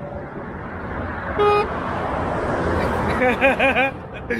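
Motorway traffic running beneath, a steady noise that swells as vehicles pass, with a single short vehicle horn toot about a second and a half in, sounded in reply to an arm-pump gesture. A man laughs near the end.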